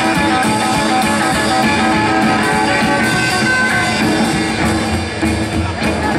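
Live rockabilly band playing an instrumental passage: guitar lead notes over drums and upright bass.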